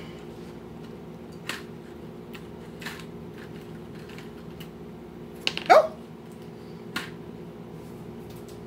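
Light clicks of fingernails on a plastic compartment pack as a nut is picked out of it, over a steady low hum. A little past halfway, a short squeal that sweeps up in pitch stands out as the loudest sound.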